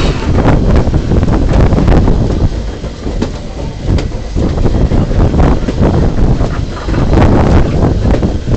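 A train running along the track, with heavy wind buffeting the microphone.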